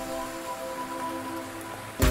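Steady rain sound under a held, sustained chord from a lofi hip hop track, with the drums dropped out.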